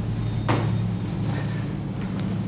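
Footsteps on a hard tiled floor, with a sharp knock about half a second in, over a steady low hum.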